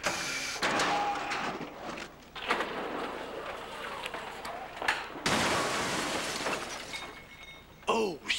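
Three loud shattering crashes, about two seconds apart, each a burst of noise that fades away, like glass and hard material being smashed.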